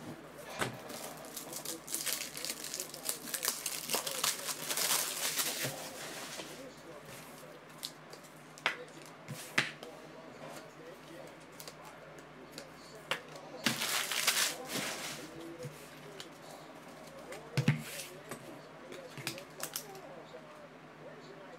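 Foil card-pack wrappers and plastic card sleeves crinkling as trading cards are handled, in two stretches: one starting about two seconds in and a shorter one about fourteen seconds in. A few sharp taps come in between and near the end.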